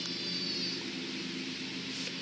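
Steady background hiss with a faint low hum running under it.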